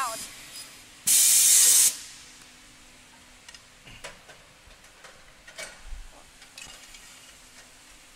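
A sharp burst of compressed-air hiss lasting just under a second, starting and stopping abruptly, from a CNC glazing bead cutting saw; faint clicks and knocks follow.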